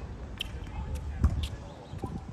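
Tennis ball impacts, a ball knocking against the hard court and strings: four short, sharp knocks, the loudest a little past halfway.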